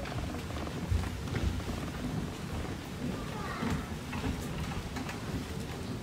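Low, steady rumbling with scattered faint knocks and brief murmured voices, as performers move about on a stage.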